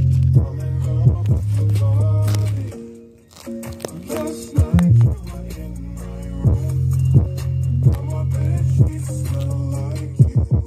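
JBL Flip 5 portable Bluetooth speaker playing bass-heavy music at full volume, with deep sustained bass notes and drum hits. The bass drops out about three seconds in and comes back a little past halfway.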